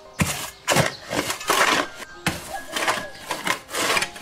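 A metal hoe chopping and scraping into dry, stony soil: a run of gritty strikes about every half second.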